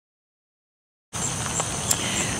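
Silence for about the first second, then outdoor background noise cuts in suddenly and runs steadily, with a faint high steady tone and a few small ticks over it.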